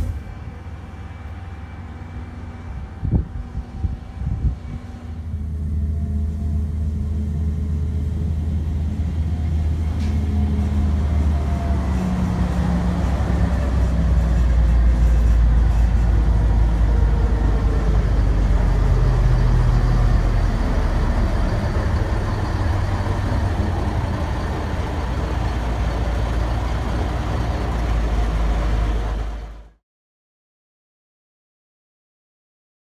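Diesel railcar engine on a rack mountain railway, running with a low steady drone from about five seconds in, after a few knocks. The sound cuts off abruptly just before the end.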